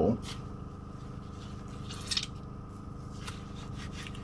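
Oil-soaked foam air filter being squeezed and worked by gloved hands, a few brief soft squelches as excess filter oil is pressed through the foam. A steady low hum runs underneath.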